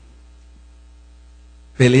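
Steady low electrical mains hum in a pause between phrases of a man's speech, which resumes near the end.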